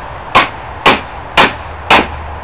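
Hammer striking the back of a hatchet set in a split yew log, four sharp metal-on-metal clangs about two a second, driving the blade along the split to open the log.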